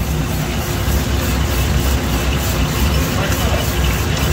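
A commercial 55 lb coffee roaster running mid-roast, giving a loud, steady mechanical drone. Mixed in is the rattle of roasted coffee beans being turned by a paddle in a steel flavouring bowl.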